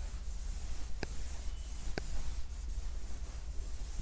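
Pen strokes rubbing across the surface of the writing board, with two short taps about one and two seconds in, over a steady hiss and low hum.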